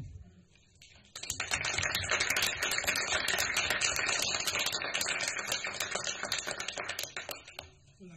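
A small audience applauding: a dense patter of clapping that starts about a second in and fades out near the end.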